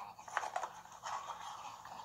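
Faint taps and light rustling, with a few sharp clicks in the first second, coming from a child's home video played through a laptop speaker.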